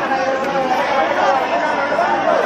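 Loud chatter of a dense crowd, many voices talking at once without a break.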